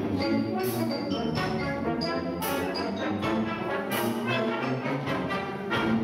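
Symphonic wind band playing, clarinets, flutes and brass together, with sharp accented hits at irregular points.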